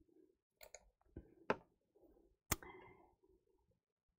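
Near silence broken by a few short, faint clicks, the two sharpest about a second and a half and two and a half seconds in.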